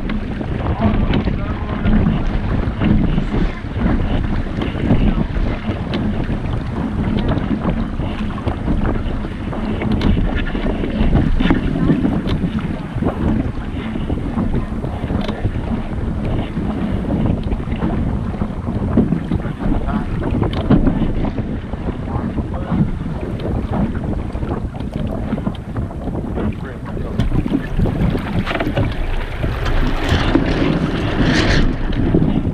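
Wind buffeting an action camera's microphone on the deck of a small sailboat under way, with water rushing past the hull. A steady, loud rumble that rises and falls in gusts.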